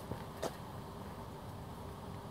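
Faint steady outdoor background noise, with one light click about half a second in.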